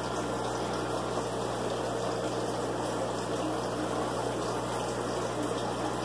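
Aquarium water pumping and bubbling, a steady rushing wash of water over a constant low hum from the pump motor.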